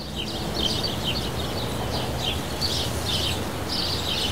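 Small birds chirping repeatedly over a steady low rumble of outdoor background noise.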